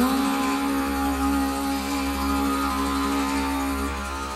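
A wordless hummed vocal note, slightly sliding up into pitch and then held steadily for almost four seconds, over a continuous drone with plucked strings in meditative healing music.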